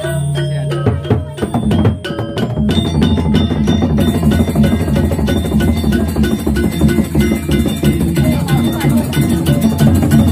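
Balinese gamelan playing: bronze metallophones struck in fast, dense ringing patterns with a barrel drum, the playing growing fuller and louder about a second and a half in.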